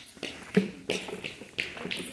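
Footsteps on concrete pavement, short sharp taps at an even pace of about three a second, as someone walks along carrying the camera.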